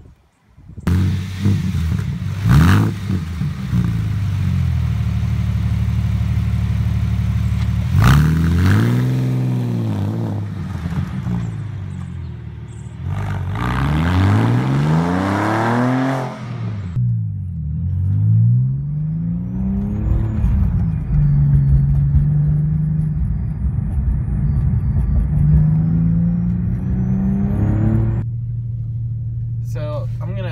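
Porsche 911 (997) flat-six breathing through a Fabspeed Supercup exhaust, a free-flowing track-use exhaust that replaces the factory mufflers. It starts up about a second in and settles to idle, then is revved several times, the pitch rising and falling. It is then driven off, the pitch climbing as it accelerates.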